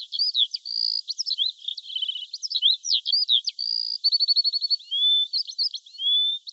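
Birdsong: several small birds chirping and whistling in quick, sweeping notes, with a fast trill of repeated notes about four seconds in.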